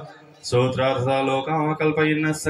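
A man chanting Hindu mantras into a microphone, heard over a loudspeaker; the chant breaks off for about half a second at the start, then resumes.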